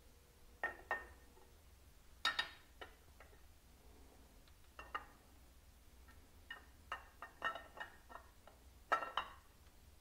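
Chrome rocker box cover clinking and knocking against the engine and frame as it is worked into place by hand, a run of sharp metallic clicks that comes thicker about seven to nine seconds in.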